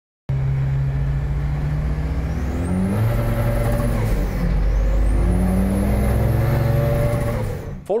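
Tuned turbocharged Volvo 940 accelerating hard, heard from inside the cabin: the engine note climbs through the gears with two gear changes, about three and four and a half seconds in. A high whistle rises with each pull as the boost builds.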